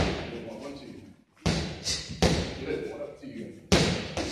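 Boxing gloves punching focus mitts: three sharp smacks, about a second and a half in, a second later and near the end, each with a short echo.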